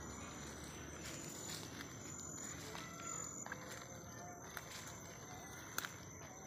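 Faint footsteps through leafy forest undergrowth, with soft rustles and a few small snaps. Under them runs a steady high insect drone, with a couple of short high chirps.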